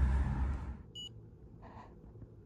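A single short electronic beep from a Contour Next EZ blood glucose meter about a second in, the tone that marks a finished test reading. Before it, a low rush of wind on the microphone fades out.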